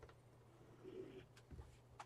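Near silence: faint room tone with a low hum, and a soft brief sound about a second in.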